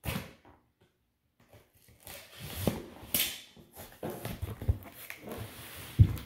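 A cardboard shipping box being handled, its flaps pulled open, with rustling and scraping. A short knock comes at the very start, and a sharper crackle about three seconds in.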